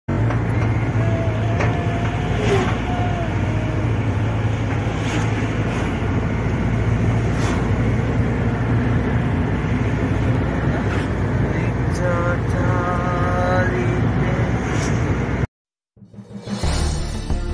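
Steady low road and engine rumble inside a moving car's cabin, with a few short pitched tones over it, the clearest about twelve seconds in. It cuts off abruptly just before the end.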